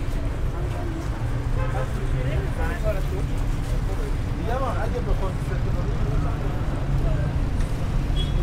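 Busy street-market ambience: a steady rumble of road traffic, with indistinct voices of passers-by and stallholders rising a couple of times, once around two seconds in and again about halfway through.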